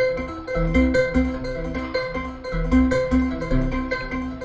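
Modular synthesizer (Synthesizers.com system with a Q171 quantizer bank) playing an irregular run of short notes on a major triad over a steady held tone. The uneven note timing comes from a Q960 sequencer stepping through different gate speeds into the quantizer.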